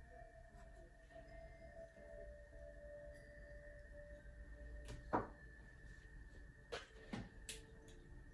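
Faint steady whine of two thin tones in a quiet room, with a few light taps or clicks: one about five seconds in and three close together near the end.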